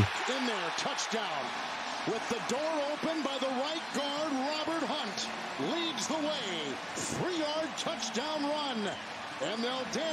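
NFL television broadcast audio at a lower volume: a commentator talking over steady stadium crowd noise after a touchdown.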